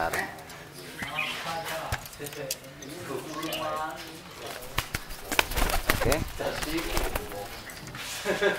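Domestic pigeon cooing in short pitched calls: a newly paired male courting and driving his hen. A few sharp clicks and knocks come about halfway through.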